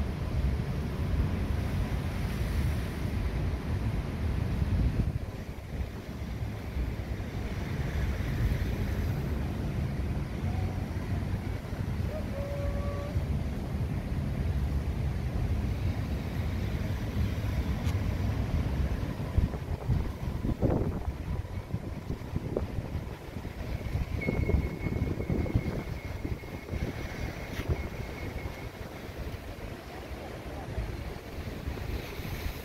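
Wind buffeting the camera microphone outdoors on a breezy beach, a continuous low rumbling noise that swells and eases.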